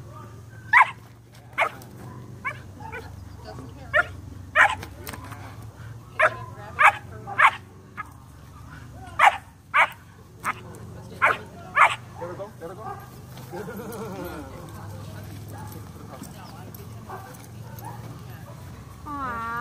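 A 12-week-old German Shepherd puppy barking at a rag being teased in front of her, about a dozen short, sharp barks in the first twelve seconds, some singly and some in quick pairs or threes, then stopping.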